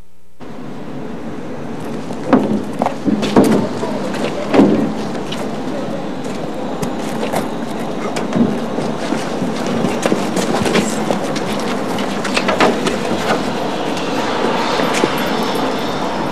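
Steel drums knocking and clanking on pavement over a steady rushing noise. The knocks come thickest and loudest a few seconds in, then thin out.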